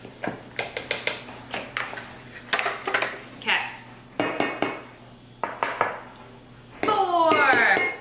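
Metal measuring cup knocking and scraping against a stainless steel mixing bowl as flour is scooped and tipped in: a run of short clinks and taps. A voice is heard briefly near the end.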